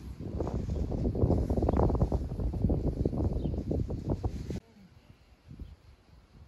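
Wind buffeting the phone's microphone, a gusty, rumbling noise that cuts off suddenly about four and a half seconds in, leaving only faint outdoor background.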